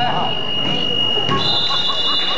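A long, steady high-pitched signal tone, joined by a second, higher tone about two-thirds of the way through, over voices and hubbub in a gymnasium.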